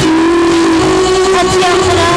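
Live band music with women's voices holding one long sung note, shifting slightly in pitch, over electric bass and guitar.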